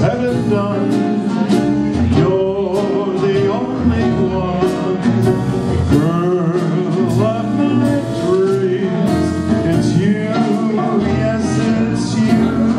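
A small traditional jazz band playing an instrumental passage: trumpet and clarinet carrying the melody over piano, banjo, string bass and drums keeping a steady beat.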